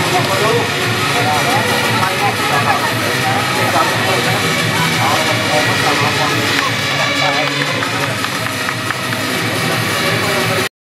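Indistinct voices over a steady, dense roar.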